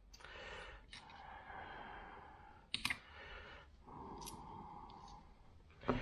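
Soft breathing with small metal clicks from a screwdriver and a Howa HACT trigger's spring E-clip being handled. There are two sharp clicks a little before halfway and a few fainter ticks later.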